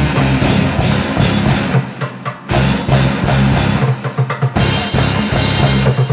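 Metal-punk band playing an instrumental passage, drum kit to the fore over bass and guitars. It drops out briefly about two seconds in, and the low end turns choppy and stop-start near the end.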